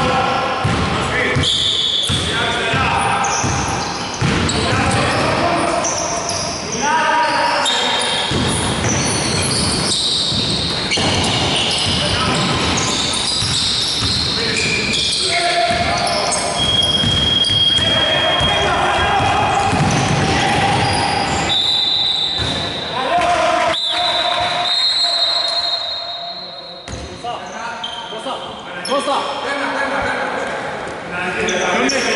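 Basketball bouncing on a hardwood gym floor during play, with players' voices calling out, echoing in a large hall.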